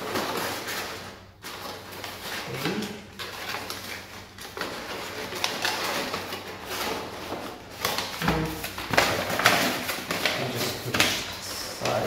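Crumpled paper rustling and crinkling in irregular bursts as hands stuff and press paper padding into a small cardboard box.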